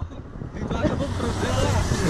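Low, steady rumble of a passing road vehicle, with faint voices of people talking and laughing over it.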